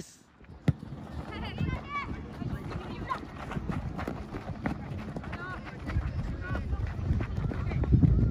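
Young soccer players shouting and calling to each other during play, over running footsteps and scuffing on the dirt pitch. A single sharp knock comes under a second in.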